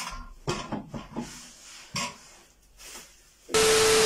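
Clicks, knocks and rustles of chair parts handled in plastic wrapping, then, about three and a half seconds in, a loud burst of TV-static hiss with a steady beep, a glitch transition effect lasting about a second.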